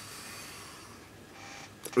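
A man's soft breath out, then a short breath in and a small mouth click just before he speaks again.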